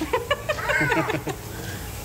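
A person laughing in a quick run of short pulses for just over a second, then fading.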